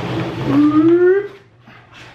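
Large paper instruction sheet rustling as it is unfolded, then a drawn-out voice-like call of under a second that rises slowly in pitch.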